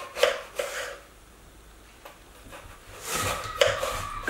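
Kitchen knife slicing through a raw russet potato and knocking on a plastic cutting board: two quick cuts about half a second in, then a few more cuts close together near the end.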